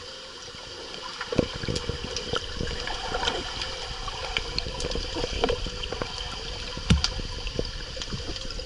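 Pool water heard from a camera held underwater: a steady gurgling, bubbling wash stirred up by a swimmer kicking, broken by scattered clicks and knocks, the sharpest about seven seconds in.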